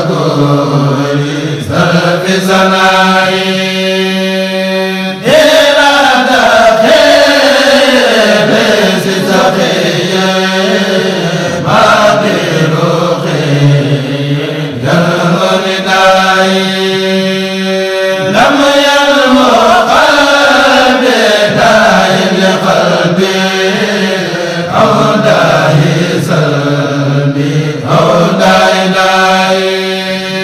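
A voice chanting in long, drawn-out held notes, the same melodic phrase coming round about every thirteen seconds.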